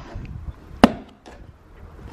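A single sharp knock a little under a second in as the hard black carry case of a dumbbell and barbell set is handled and shifted, with fainter handling noise around it.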